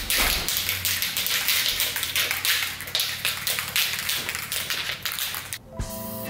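Aerosol can of spray polyurethane hissing in a quick run of short spray bursts, cutting off suddenly near the end.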